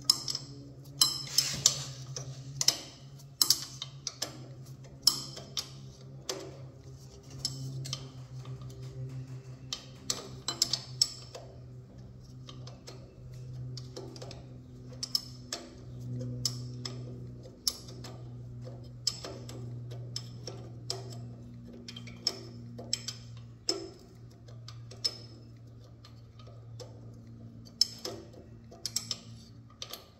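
Ratchet wrench clicking in short irregular runs as a half-inch engine mounting bolt is worked loose, over a steady low hum. The clicks come thickest in the first ten seconds or so, then more sparsely.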